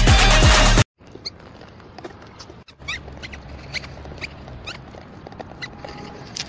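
Electronic dance music with a steady kick drum, cut off abruptly about a second in. Then a quieter run of short, high animal squeaks, each a quick glide in pitch, several a second at times.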